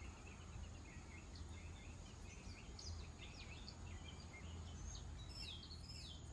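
Small birds chirping and twittering in many short, quick notes, faint over a steady low rumble.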